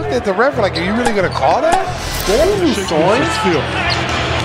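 Basketball highlight audio: a voice sweeping up and down in pitch over background music with a steady low bass, and a basketball being dribbled on a hardwood court.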